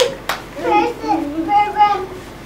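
Young children's voices talking quietly, with one sharp click about a quarter of a second in.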